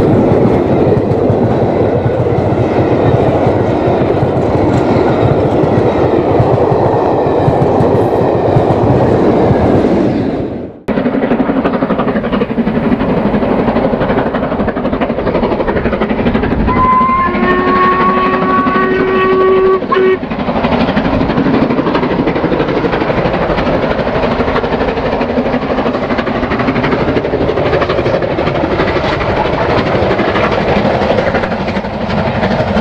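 Steam-hauled train of the LMS Princess Coronation class Pacific 6233 Duchess of Sutherland: at first its coaches pass close by with a loud rush and wheels clacking over the rail joints. The sound cuts off suddenly, and the locomotive is then heard working at a distance, its steam whistle sounding once for about three seconds near the middle.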